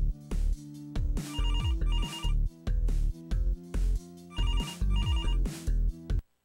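Upbeat electronic jingle with a heavy beat and falling bass glides, with an electronic telephone ring laid over it: two double trilling rings, about a second in and again about three seconds later.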